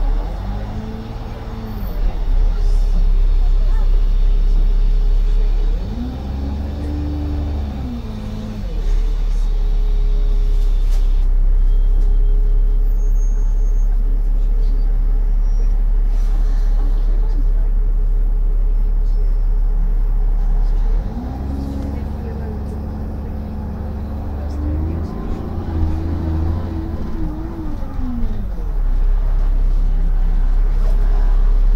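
Bus engine and drivetrain heard from inside the passenger saloon of a single-deck bus. There is a constant heavy low rumble, and the engine note rises and falls four times as the bus pulls away and accelerates through its gears.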